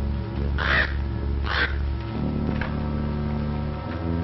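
A crow cawing twice, then a fainter third call, over background film music with held chords.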